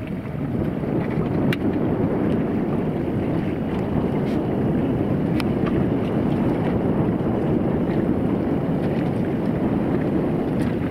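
Steady wind noise on the microphone, a dull even rushing, with a few faint ticks.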